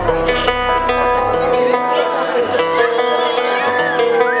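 Live folk music: an acoustic guitar picking an instrumental passage of sustained, ringing notes. The deep bass underneath drops away about a second and a half in.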